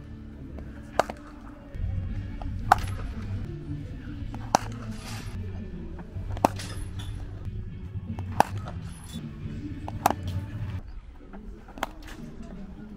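Cricket bat striking the ball in net practice: about seven sharp knocks, roughly two seconds apart. Background music plays underneath from about two seconds in and drops away near the end.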